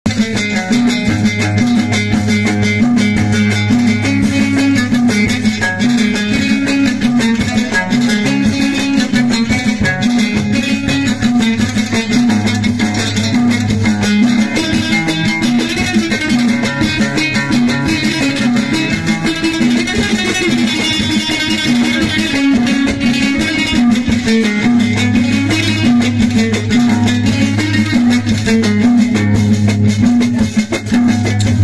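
Moroccan loutar (watra), a skin-topped long-necked lute, played in a fast chaabi rhythm: quick, dense plucking over strong low notes.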